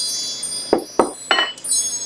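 Metal chimes swept with a mallet, a cluster of high, bright tones ringing on, with a few more strikes about a second in, used to call spirit before a tarot reading.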